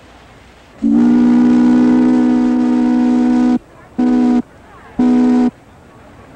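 Steamship Segwun's steam whistle sounding one long blast of nearly three seconds, then two short blasts, each a steady low chord of several tones.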